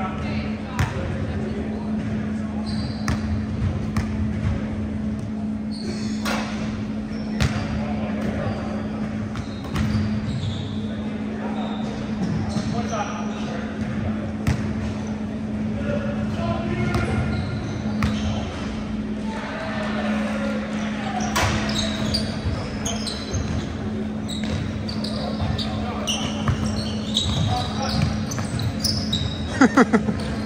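A basketball bouncing now and then on a hardwood gym floor, sharp echoing thuds in a large hall, over indistinct players' voices and a steady low hum.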